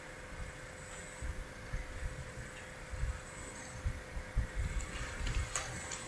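Faint, irregular low knocks and light rustling of a ballpoint pen writing in a paper planner on a desk, over a thin steady electrical hum.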